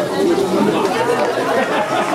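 Several people talking at once close to the microphone: indistinct chatter of spectators, no single voice standing out.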